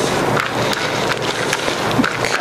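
A hand squeezing and working a damp mix of red potter's clay, mushroom compost and seeds in a plastic bowl: steady gritty crunching and rustling with many small crackles. The mix is still a little dry and crumbly.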